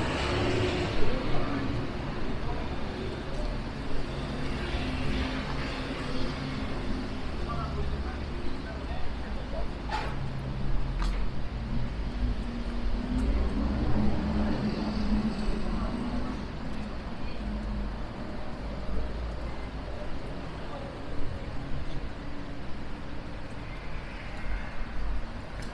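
City street ambience: road traffic running steadily alongside the sidewalk, with passersby's voices. Two sharp clicks sound about ten and eleven seconds in.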